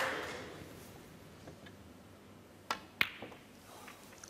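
Two sharp snooker-ball clicks about a third of a second apart, some two and a half seconds in: the cue tip striking the cue ball, then the cue ball hitting a red on a shot that pots it.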